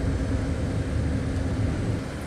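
Steady low rumble of a river sightseeing boat's engine while under way, with a hiss of wind and water over it.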